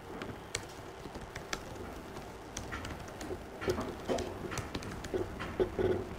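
Laptop keyboard typing: irregular, quick keystroke clicks as a line of code is typed.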